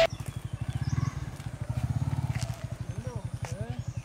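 Yamaha R15's single-cylinder engine running slowly at low revs, an even rapid low pulse. A few short chirping calls come through about three seconds in.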